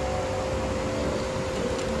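Steady hum and hiss of indoor air conditioning or ventilation, with a faint held tone running through it.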